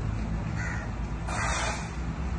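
A crow cawing twice, a short call and then a longer, louder one, over a low steady rumble.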